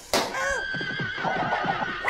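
A balloon bursting with a sharp bang just after the start, followed by warbling, pitch-bent tones and crackles from heavy audio effects processing.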